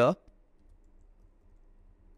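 Faint typing on a computer keyboard, a short run of keystrokes.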